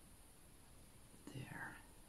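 Near silence: room tone, broken about one and a half seconds in by a short, soft whispered vocal sound lasting about half a second.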